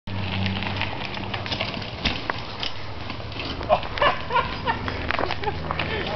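Knobby mountain bike tire spinning against a log, a steady low buzz under a rough scraping with many small clicks as the knobs chew into the wood. Brief voices cut in about the middle.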